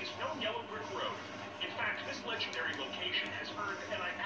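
Television sound from the satellite channel on screen: a voice talking over background music, heard through the TV's speaker.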